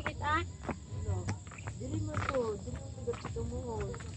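Crickets chirring in a steady high tone, under faint voices of people talking some way off.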